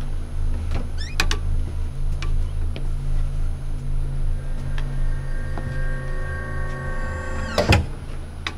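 A steady low drone with a few faint clicks. From about halfway, held high tones build over it like a suspense score, and a single loud thump hits near the end.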